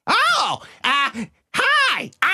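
A high-pitched cartoon character's voice making three short wordless vocal sounds, each swooping up and then down in pitch.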